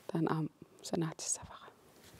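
Speech only: a voice saying two short, soft phrases, the second about a second in.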